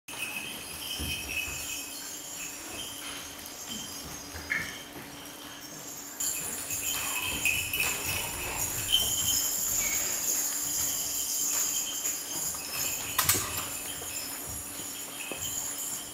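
A high jingling, tinkling sound that grows louder about six seconds in, with scattered light clicks and one sharp knock about thirteen seconds in.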